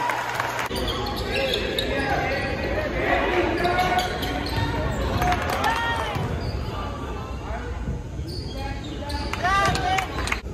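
Basketball game sounds in a gym: a ball bouncing on the hardwood floor, sneakers squeaking a few times, and voices of players and spectators echoing in the hall.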